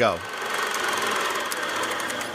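A small machine running with a steady whirring rattle, getting louder about a quarter-second in.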